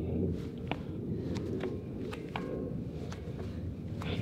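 Wind rumbling on the microphone, with a few light, scattered footsteps of sneakers on a narrow steel beam.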